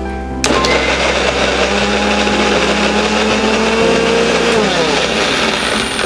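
Electric blender (mixer-grinder) running, blending bottle gourd pieces into juice. It starts abruptly about half a second in, runs steadily with its pitch shifting near the end, and stops at the end.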